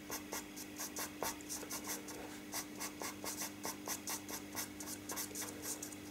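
Pastel pencil scratching over fixative-sprayed pastel paper in short, quick strokes, several a second, as fur is drawn in. Faint, with a low steady hum underneath.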